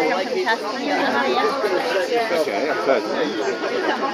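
Several people talking over one another around a dinner table: continuous conversational chatter, with no single clear voice.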